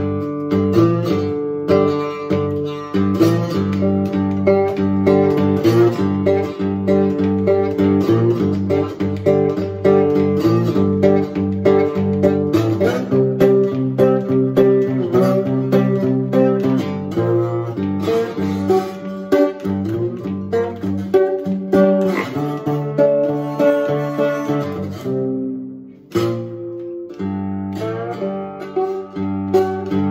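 Cigar box guitar played bottleneck style with a metal slide, picking a steady, driving blues pattern. There is a brief dip in the playing near the end before it picks up again.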